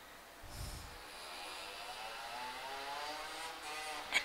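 A computer cooling fan whirring up, its pitch rising steadily and its sound growing louder as the machine comes under the load of compiling the program. A soft low thump comes about half a second in.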